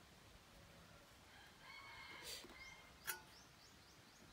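Faint outdoor quiet with a distant chicken call around the middle, then a single sharp click a little after three seconds, followed by a run of faint, high, quick bird chirps.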